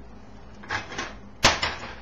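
A nonstick frying pan being moved on an electric coil stovetop: a brief scrape under a second in, then a sharp clunk about a second and a half in as it is set down.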